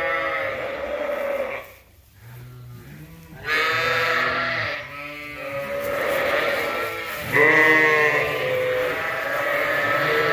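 Suffolk sheep bleating over and over, several long, wavering calls one after another with short gaps between them.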